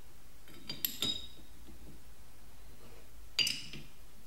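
Metal lever cap of a block plane clinking against the blade and plane body as it is set back in place and seated: a cluster of sharp clinks with a brief metallic ring about a second in, and another clink near the end.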